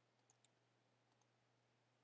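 Near silence, with two faint clicks close together about a third of a second in, from a computer mouse clicking.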